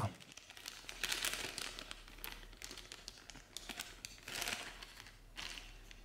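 A small clear plastic bag crinkling as it is handled and pressed flat, in several irregular bursts, the loudest a little over a second in and again about four and a half seconds in.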